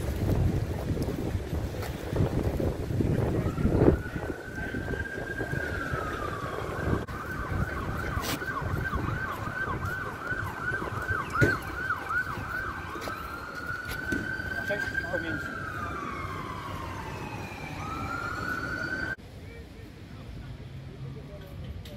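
An emergency vehicle siren wails, rising and falling slowly. For a few seconds in the middle it switches to a fast yelp, then returns to the slow wail, and it cuts off abruptly near the end. Low wind rumble on the microphone is heard in the first few seconds.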